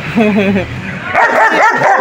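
Dog barking and yipping: a short, wavering yip near the start, then a louder burst of barks in the second half.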